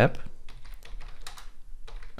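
Computer keyboard typing: a string of separate, irregularly spaced keystrokes as a terminal command is entered.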